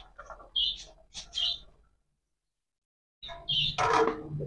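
A few short, high bird chirps: two in the first second and a half and another near the end. Under them are faint clicks of a steel plate as chopped onion is scraped off it into a pot. The sound drops out completely for about a second and a half in the middle.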